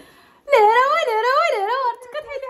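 A woman's loud, wavering wail, its pitch rising and falling about three times a second for about a second and a half.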